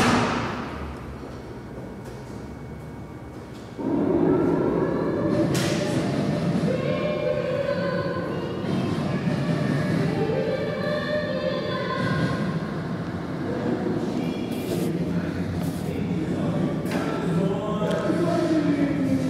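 A car door slams shut with one loud thud that rings away over about a second. About four seconds in, a chorus of many voices singing with music starts up and carries on.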